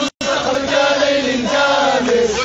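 A crowd of protesters chanting a slogan in unison, led by a man on a megaphone. The sound cuts out completely for a moment just after the start.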